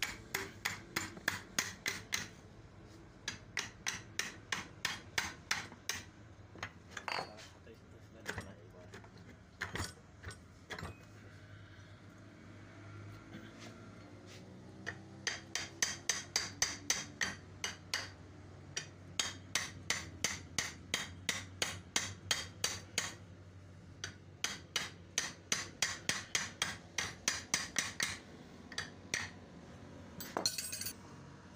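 Runs of quick hammer taps on the metal of a household water pump motor being dismantled, about four to five strikes a second, in bursts of a few seconds with short pauses between them.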